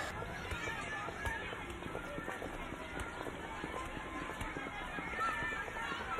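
Schoolyard ambience: many children's voices chattering and calling at a distance, with running footsteps.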